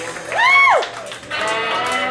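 A high whoop in a person's voice about half a second in, rising and then falling in pitch, over live band and bar-crowd noise; a steady held note follows near the end.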